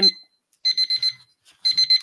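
Electronic timer beeping: quick, high, repeated beeps in short groups, typical of a speaking-time limit running out on a public comment.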